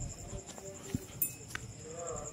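Faint outdoor night ambience: a steady, evenly pulsing high insect trill under faint distant voices, with a few light clicks about a second in.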